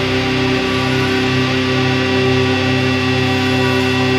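Fuzz-distorted electric guitar in drop-C tuning holding a sustained, droning chord of instrumental doom metal, with a slow throb in the low notes.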